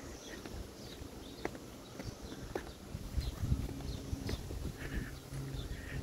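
Quiet outdoor background with a few scattered light taps, and a low rumble from about halfway: footsteps and phone handling as someone walks along a concrete sidewalk.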